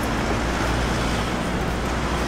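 Steady street traffic noise: a constant low rumble of road vehicles with an even hiss over it.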